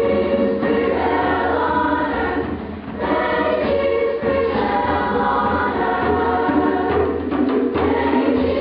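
Children's choir singing together in held, sustained notes, with a short drop in level just before the third second between phrases before the singing picks up again.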